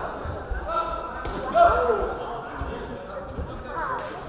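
Shouting voices of coaches and referee during a kickboxing bout, loudest in one strong call about a second and a half in, over dull thuds of footwork and strikes on the floor mats.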